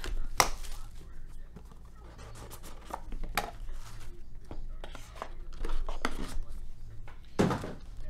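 Plastic shrink-wrap being torn off a trading-card box and crinkled, then the cardboard box opened and the cards handled out of a foam insert: an irregular run of sharp crackles and taps, loudest about half a second in and again near the end.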